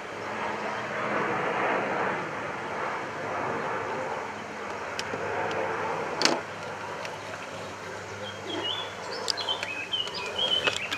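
Steady outdoor background rumble with a faint low hum, broken by a sharp click about six seconds in. Short bird chirps come in near the end.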